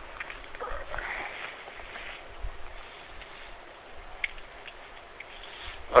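Faint noise heard over a phone line, with a few soft clicks and rustles.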